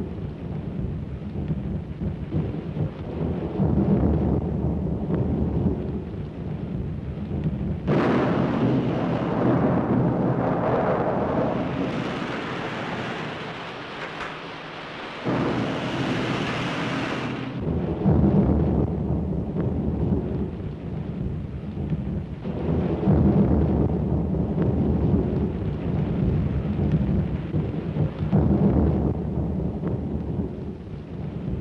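Heavy storm surf breaking against rocks: a continuous rumbling rush of water that swells and ebbs with each wave, turning harsher and hissier for several seconds in the middle.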